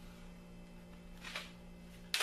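One short scrape on a sheet of galvanized sheet metal about halfway through, from the marking pen and metal straightedge being worked on it, over a faint steady low hum.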